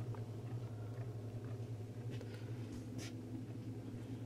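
Low steady hum from a Samsung DA-E750 vacuum-tube audio dock idling with no input signal while its tubes warm up; the static-and-popping fault has not set in yet. A faint tick about three seconds in.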